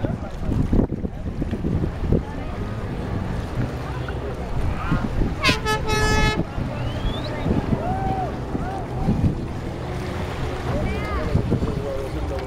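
A speedboat's engine drones in the distance as it tows a banana boat, with wind on the microphone and people's shouts and laughter. About halfway through, a single loud toot sounds for about a second.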